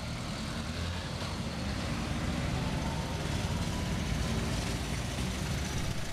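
Street traffic with motor scooter engines running, a steady mix of engine hum and road noise.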